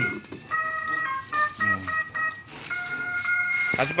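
Ice-cream vendor's bicycle jingle from a small speaker: a simple electronic melody of steady, beep-like tones stepping from note to note.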